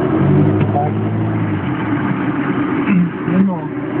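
Mercedes G-Class 'Wolf' engine running steadily, a low hum heard from inside the cab, with people talking over it.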